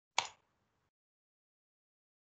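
A single sharp click near the start.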